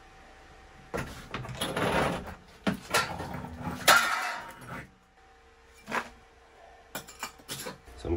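Irregular clattering knocks and scrapes of a plastic utility sink and a metal hand tool being handled, busiest in the first half, with the loudest, longer scrape about four seconds in and a few lighter knocks near the end.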